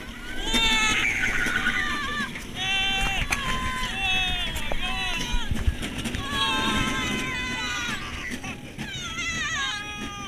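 Roller coaster riders screaming, one long cry after another from several voices, over wind rushing on the microphone.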